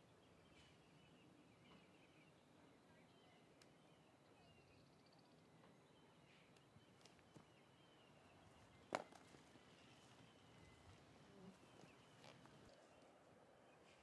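Near silence: faint outdoor ambience with distant birds chirping, and a single sharp click about nine seconds in.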